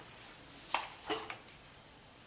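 Two or three short plastic clatters in quick succession, just under a second in, as a hot glue gun is picked up off the countertop.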